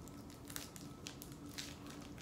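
Faint crinkling of a Twix bar's plastic wrapper being opened by hand: a few soft, scattered crackles.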